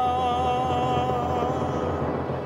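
A man sings one long held note, slightly wavering, over a steady instrumental accompaniment; the note fades away near the end.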